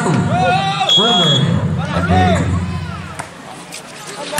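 A man's voice calling out in drawn-out tones for the first two and a half seconds, with a short high whistle about a second in. It then drops to quieter crowd murmur with two sharp knocks near the end, volleyball hits as a rally gets under way.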